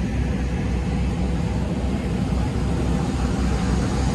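Steady low rumble of airport apron noise, with aircraft engines running somewhere on the field.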